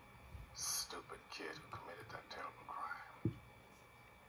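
A man's voice speaking, played from a television and picked up off its speaker, with a short thump a little after three seconds in.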